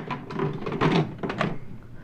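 Plastic Nerf blasters knocking and clattering against each other in a plastic tub as they are shifted around: several knocks in the first second and a half, then quieter.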